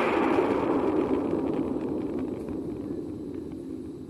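Rumbling whoosh sound effect for an animated title graphic, starting loud and fading steadily.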